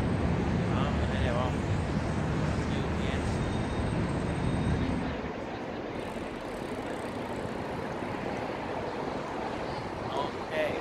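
City street traffic: a low engine rumble from passing vehicles for about the first five seconds, then it drops away to a lighter, steady street hum.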